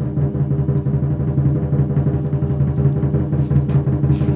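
Lion dance percussion music with continuous, rapid drumming.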